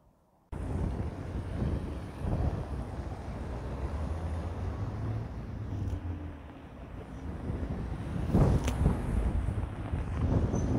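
After a moment of silence, wind buffets the microphone in a steady low rumble, mixed with traffic going by on a wet street; a louder burst comes about eight and a half seconds in.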